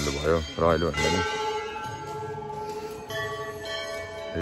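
A bell is struck about a second in and rings on with long steady tones. It is struck again about three seconds in. Before it, a voice sings a wavering, ornamented melody that stops about a second in.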